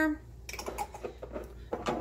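Faint, light clicking and tapping of kitchen utensils being handled at the stove, with a sharper click near the end.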